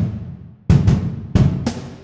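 Sampled kick drum from Soundiron's Drums of St. Paul library, recorded in a cathedral, struck three times. Each deep hit rings out in a long reverberant tail that fades slowly.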